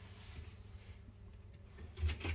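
Quiet room tone: a low steady hum with faint hiss and no distinct clicks.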